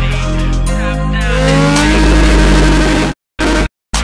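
A motorcycle engine revving up, rising in pitch from about a second in, over loud music. Near the end the whole track cuts out and back in several times in abrupt stutters.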